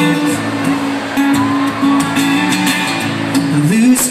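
Live acoustic guitar music played through a concert sound system, with long held notes that break off and resume, one dipping and rising in pitch near the end.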